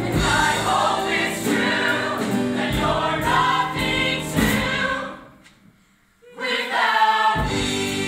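Musical theatre ensemble singing with accompaniment. The music fades out about five seconds in, there is a brief near-quiet gap, then singing and accompaniment start again.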